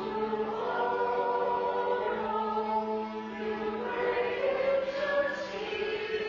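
A congregation singing a hymn together, accompanied by an organ that holds long steady notes.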